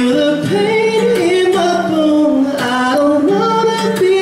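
Male singer's voice holding long notes and sliding between them without clear words, over acoustic guitar accompaniment.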